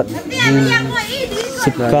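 People's voices talking and calling back and forth, some syllables drawn out into long held vowels.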